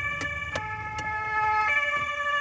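Police car siren sounding from inside the car, a set of steady tones that step in pitch every half second or so.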